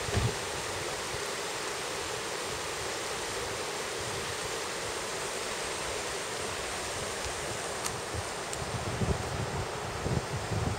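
Shallow mountain river rushing over rocks in riffles, a steady rushing hiss. A few low wind bumps hit the microphone near the end.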